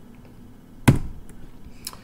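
A single sharp tap about a second in, then a fainter click near the end, over quiet room tone.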